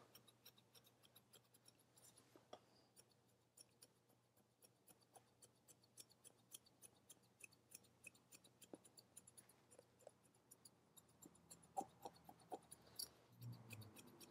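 Hairdressing scissors snipping hair: a run of faint, quick snips as stray curls at the nape are cut off one by one, a little louder near the end.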